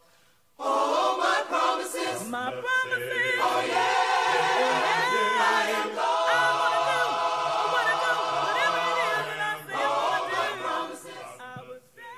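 Many voices singing a hymn a cappella in several parts, with no instruments. The singing starts about half a second in, after a moment of silence, and breaks briefly between phrases.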